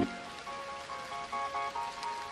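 A quiet break in a lofi remix of a Hindi song: the full, bass-heavy backing cuts out at the start, leaving a few soft, short melodic notes over a faint rain sound effect.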